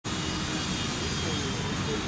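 Steady outdoor background noise, a constant low hum with faint distant voices.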